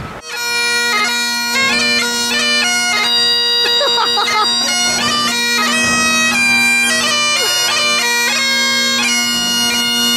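Bagpipes playing a melody over a steady drone, coming in abruptly at the start.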